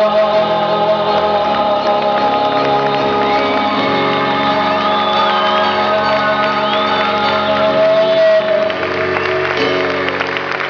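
Live performance of a slow song: a male singer holding long notes at the microphone over sustained instrumental accompaniment.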